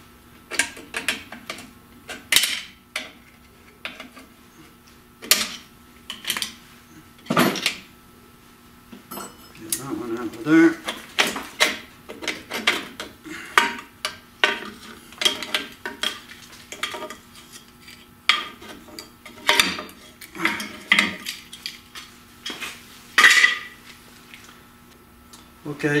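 Steel drum-brake shoes and return springs being worked off an MGB's rear brake backing plate with locking pliers, giving irregular metal clinks, clicks and clanks.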